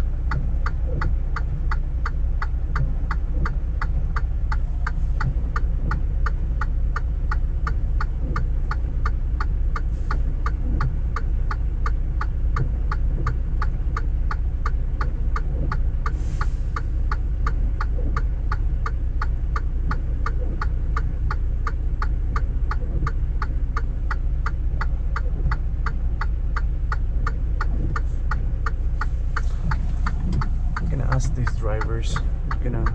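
A Freightliner semi truck's diesel engine idles with a steady low rumble heard from inside the cab. Over it, the indicator flasher relay clicks evenly, about three clicks a second.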